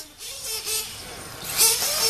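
Radio-controlled truggies running on a dirt track. A high rushing hiss swells near the end, with faint voices underneath.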